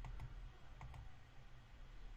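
A few faint clicks of a computer mouse, over a low steady hum.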